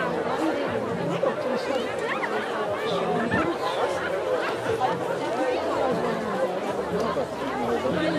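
Crowd chatter: many voices talking at once at a steady level, none clear enough to make out words.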